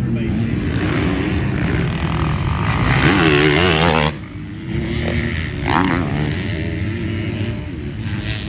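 Motocross dirt bike engines running, with the pitch rising and falling as they rev; the sound drops and changes abruptly about four seconds in.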